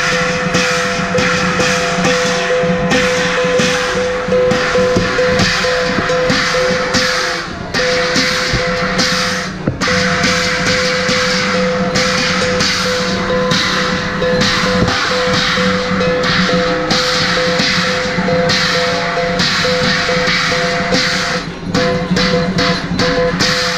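Traditional Chinese qilin-dance percussion of drum and cymbals, struck continuously in a fast, steady rhythm over a sustained ringing tone, with two short breaks in the middle.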